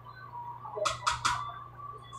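Three quick, sharp clatters in a row a little under a second in, from cookware being handled at a kitchen stove.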